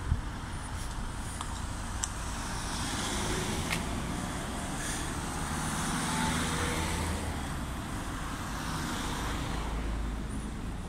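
Road traffic: cars going slowly past on a two-lane road, with one car passing close, loudest about six seconds in. A few light clicks sound over it.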